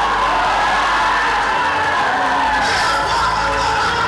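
A woman's voice through the church PA holds one long, loud cry that rises and falls, over live worship music. The congregation cheers and whoops underneath.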